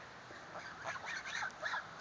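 Domestic geese giving a series of faint, short calls as the flock walks along.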